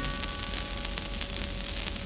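Surface noise of a shellac 78 rpm record: a steady hiss with faint crackles, a faint held organ note lingering underneath.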